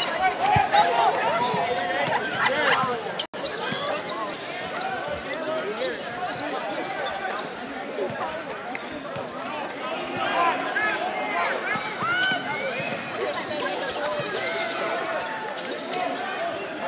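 Gym sound of a basketball game in play: the ball dribbled on the hardwood court, sneakers squeaking, and voices from the players and crowd mixed in. The sound cuts out for an instant about three seconds in.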